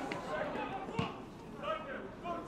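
A football kicked once, a single dull thud about a second in, with players' voices calling on the pitch around it.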